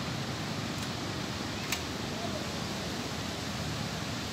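Steady wash of ocean surf mixed with wind on the microphone, with one short sharp click a little under two seconds in.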